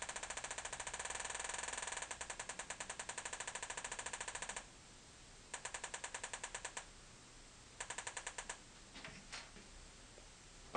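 Homemade metal detector's audio output ticking in an even run of clicks as an old pull tab is held near its search coil: fast at first, slowing about two seconds in, stopping a little before the middle, then returning in two short bursts. The changing click rate is the detector's signal that metal is near the coil.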